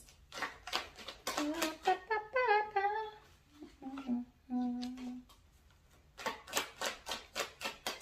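A deck of tarot cards being shuffled by hand, a quick run of crisp card clicks near the start and again near the end. In between, a woman hums a few notes.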